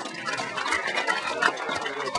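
Crowd applauding: many hands clapping in a dense, even patter.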